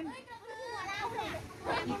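Quiet speech and children's voices from a group of children, with a voice a little louder near the end.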